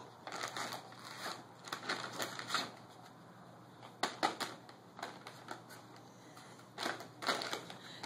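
Plastic dog-treat bags crinkling and rustling in irregular bursts as a Yorkie noses and tugs at them and at a cloth stocking, with quieter gaps between the bursts.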